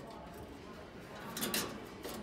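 Quiet indoor background with a brief, indistinct bit of speech about one and a half seconds in.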